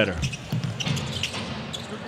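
A basketball bouncing on a hardwood court over the steady murmur of an arena crowd, with a few short, sharp court sounds scattered through.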